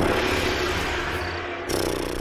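A post-production sound effect: a steady, hissing wash of noise with a held low tone beneath it. It builds again near the end, like a whoosh leading into a transition.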